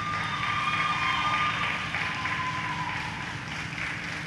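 Audience applause at an ice rink after a skating program ends, with a thin steady tone over it for the first second and a half.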